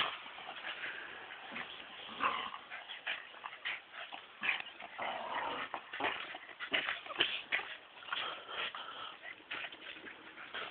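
Two working terriers worrying a scarf between them: short, irregular dog noises mixed with scuffling as they bite and tug at the fabric.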